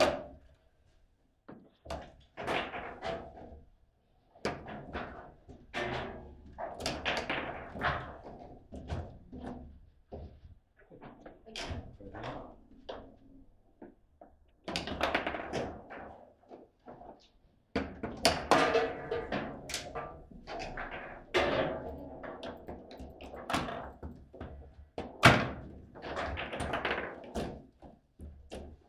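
Table football in play: the ball and the rod-mounted players knocking against each other and the table, with the rods clacking at uneven intervals in quick flurries and short pauses. One especially sharp, loud knock comes near the end.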